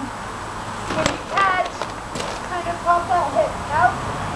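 A woman's voice in short sung or vocalised phrases, with a brief sharp knock about a second in.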